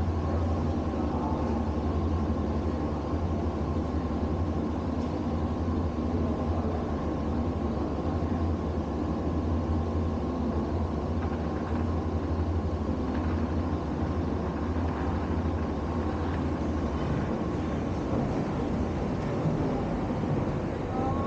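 Steady low mechanical hum filling an enclosed station hall, unchanging throughout.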